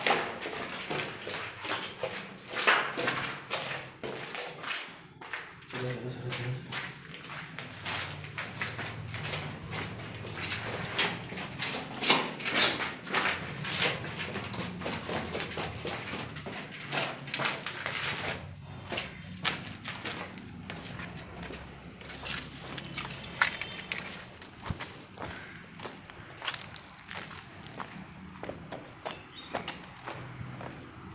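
An indistinct, muffled voice in places, under near-constant clicking and rustling from close handling.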